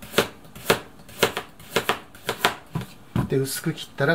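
A kitchen knife slicing a raw carrot into thin rounds on a cutting board, each stroke ending in a sharp tap of the blade on the board, about two cuts a second.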